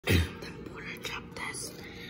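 A person whispering, with a short low thump right at the start.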